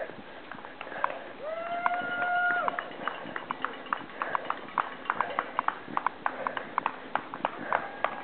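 A runner's footsteps on the road in a steady rhythm of about three strides a second, picked up by a handheld camera that is carried while running. About a second and a half in, a voice calls out one long, held note that rises at the start and drops away at the end.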